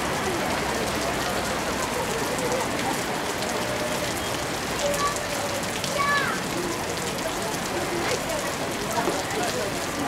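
Steady rain falling on a wet street, an even hiss throughout, with faint voices in the background.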